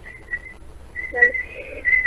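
Acoustic feedback on a live phone call: a single high, steady whistling tone that starts and breaks off, then holds and grows louder in the second half. It is the sign of the caller's television being turned up, so the broadcast loops back into the phone line.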